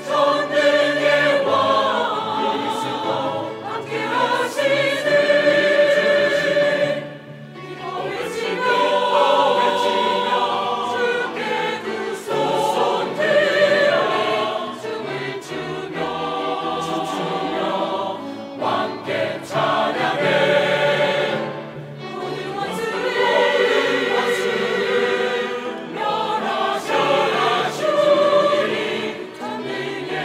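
Mixed choir of men and women singing a hymn in Korean, with a brief break in the sound about seven seconds in.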